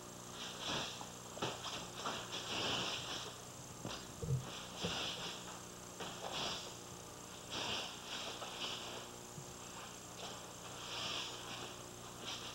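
Rustling and soft thuds of a two-person karate demonstration (uniforms swishing, strikes and feet landing on the mat) in irregular short bursts over a steady mains hum, the loudest a low thump a little after four seconds in.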